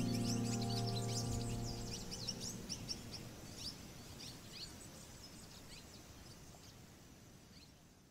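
The last chord of the soundtrack music fading away over the first two seconds, over a bed of birds chirping with many short, high calls. The whole sound fades steadily toward silence by the end.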